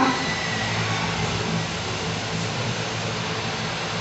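A steady low mechanical hum with an even background hiss, unchanging throughout.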